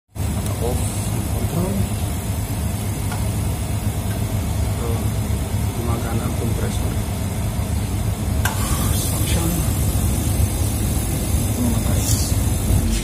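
Electrolux counter chiller's refrigeration compressor running with a steady low hum, although its Carel IR33 digital controller is switched off. The controller's relay has failed to release, so the compressor keeps running. A brief click comes about eight seconds in.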